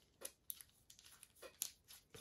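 A few faint clicks and small metallic scrapes of a screw being put back in by hand into a GUB Pro 3 phone mount's alloy handlebar clamp.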